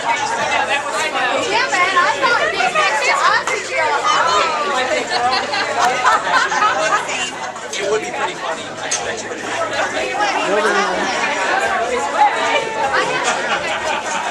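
A crowd of guests chattering in a hall, many voices talking over one another at once.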